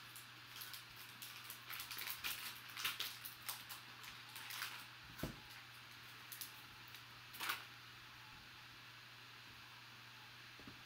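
Foil trading-card pack wrapper crinkling and tearing as it is opened by hand: a run of short crackles for about the first five seconds, one louder crackle a little past seven seconds, then quieter handling.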